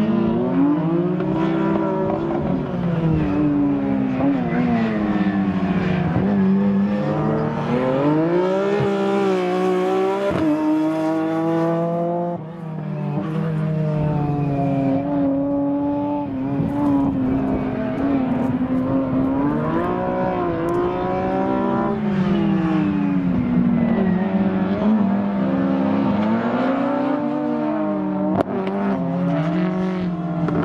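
BMW E36 M3 drift car, tuned to 381 hp, its engine revving up and dropping back again and again as it drifts through the corners. There is a brief lift in the revs about twelve seconds in.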